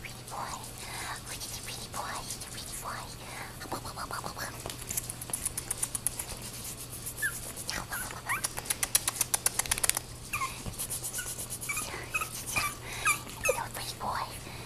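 Chihuahua puppy giving short, high squeaky yips and whines while play-biting a hand, with scratchy rustling of a fur rug in a quick run of clicks about eight seconds in.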